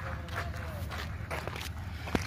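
Footsteps of a person walking, a few short steps, over a steady low rumble.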